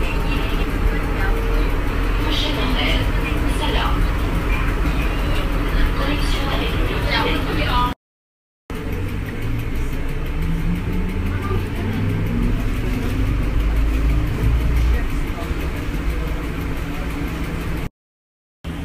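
Inside a NAW trolleybus under way: a steady electric drive hum with road noise, and a rising whine about halfway through as the bus pulls away and gathers speed. The sound cuts out briefly twice.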